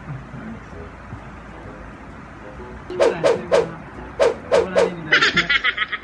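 Several people laughing: after about three seconds of quiet, a few short loud bursts of laughter, then a quick run of rapid 'ha-ha' pulses near the end.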